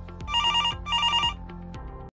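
Electronic telephone ringing: two short warbling trills in quick succession, the double ring of an incoming call, over background music with a steady beat.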